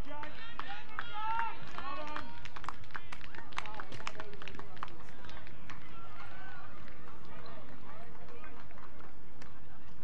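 Several men's voices shouting and calling out across an outdoor football ground, busiest in the first four seconds, then thinning out, with scattered short sharp knocks.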